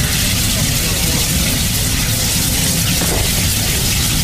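Fuel fire burning out of a burst 44-gallon steel drum, the flame jetting from the drum with a steady rushing noise and low rumble.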